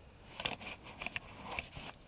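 Hands handling gear: a run of small clicks and crackly rustles of items being moved, starting about half a second in.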